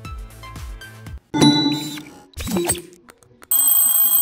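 Background music fades out, followed by short end-screen sound-effect stings. In the last half second a notification-bell ringing effect plays.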